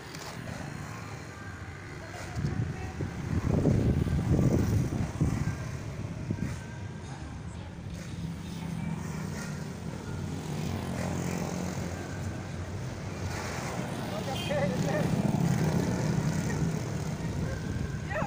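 Road traffic passing, motorbikes and cars, with a steady low rumble that swells louder about three to five seconds in and again near the end, and people's voices in the background.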